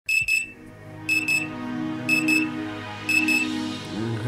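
A high electronic double beep, repeated four times about a second apart, over sustained low synth notes.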